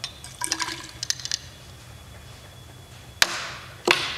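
Sodium iodide solution poured from a small glass vessel into a glass graduated cylinder of 3% hydrogen peroxide, with a cluster of light glass clinks in the first second and a half. Near the end come two sharp knocks.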